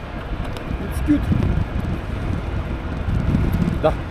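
Wind buffeting the microphone of a bike-mounted camera while riding along a road, a steady low rumble that rises and falls in gusts.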